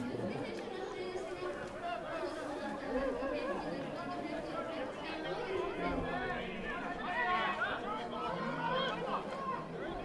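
Several faint voices chattering and calling out at once, overlapping, from football players on the field and sideline between plays.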